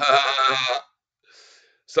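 A man laughing: one held, voiced laugh of under a second, followed by a short faint breath out.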